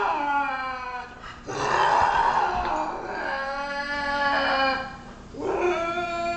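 Lynx calling with long, drawn-out howling calls. A call falling in pitch ends about a second and a half in, a second call holds a steady pitch for about three and a half seconds, and a third begins near the end.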